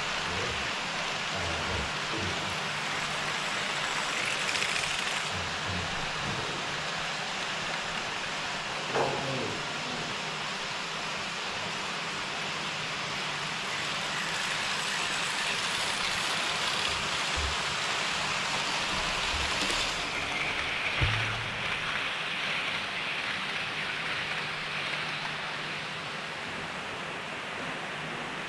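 HO-scale model trains running on KATO Unitrack: a steady whirring noise of small metal wheels and motors rolling on the rails as a steam locomotive and a long rake of passenger coaches pass close by. A brief knock comes about nine seconds in and a louder thump about 21 seconds in.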